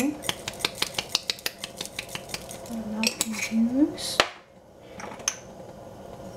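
A quick run of light kitchenware clicks and taps, about eight to ten a second for a couple of seconds, as dried herbs are shaken from a container into a steel stockpot, followed by a few single clicks.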